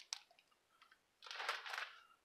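A bagged comic book being handled on a shelf: a short click at the start, then a soft plastic rustle of about half a second a little past the middle.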